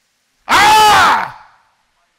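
A man's loud wordless vocal exclamation: one drawn-out cry, about a second long, whose pitch rises and then falls.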